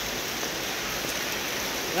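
Heavy monsoon rain and muddy floodwater running across a road, a steady even hiss. A voice starts right at the end.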